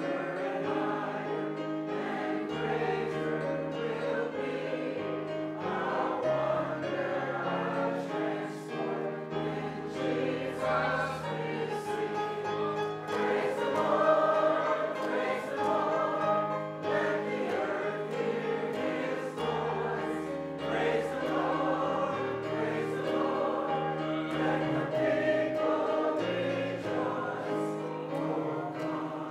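A congregation singing a slow hymn together, accompanied by an organ whose long held bass chords change every few seconds.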